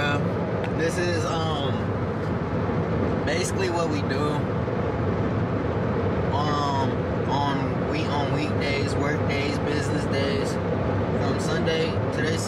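Steady road and engine noise inside a moving car, with a voice heard at times over it.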